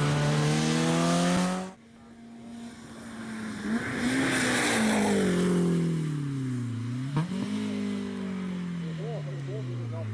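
BMW E30 rally car accelerating hard, its engine revs climbing steadily until the sound cuts off abruptly about two seconds in. The car's engine then comes in again, rising with a rush of noise as it passes, falling in pitch, briefly revving up again around seven seconds in, and falling away as it drives off.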